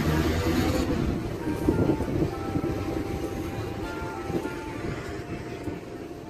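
Steady low rumble of road traffic and wind on the microphone, easing off toward the end, under light background music.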